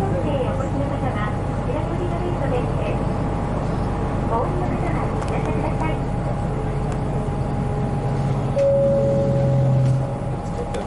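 Cabin sound of a 1996 Hino Blue Ribbon KC-RU1JJCA city bus on the move: a steady engine drone with road and running noise. Near the end the engine note gets louder and steadier.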